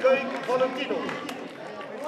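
Spectators' voices talking close by, loudest in the first second and then fading.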